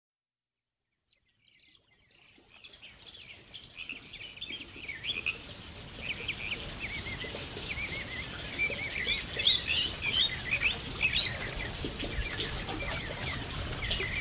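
A chorus of small birds chirping in many quick, short notes over a steady background hiss. It fades in from silence in the first couple of seconds and keeps growing louder.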